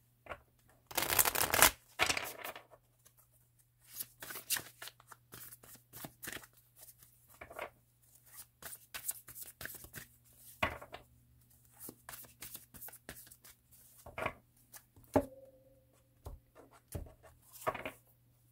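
A deck of tarot cards being shuffled by hand: a loud burst of riffling about a second in, then a long run of short card snaps and slides in uneven bursts.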